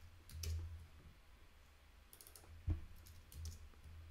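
Faint computer keyboard keystrokes: a few scattered key clicks, the loudest about two-thirds of the way through, over a low steady hum.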